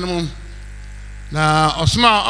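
A man's amplified voice breaks off and leaves about a second of steady low electrical hum on the microphone line. Then he comes back in with a long held vowel.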